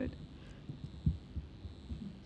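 Soft, irregular low thuds, about five in two seconds, over a steady faint room hum.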